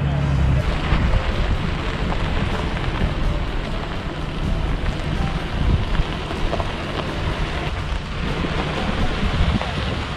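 Wind buffeting the camera microphone: a steady, rough rushing noise.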